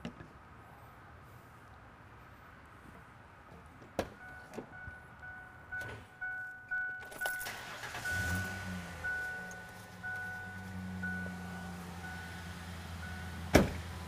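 A pickup truck's engine starting about seven seconds in and then idling steadily, left running so the cooling-system flush circulates. A warning chime in the cab beeps repeatedly while the engine starts, and the door shuts with a sharp knock near the end.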